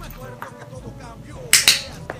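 A handheld training clicker gives a sharp double click, press and release, about one and a half seconds in. The click marks the kitten's jump onto the arm as the right behaviour.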